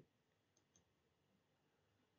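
Near silence, with two very faint ticks about half a second in.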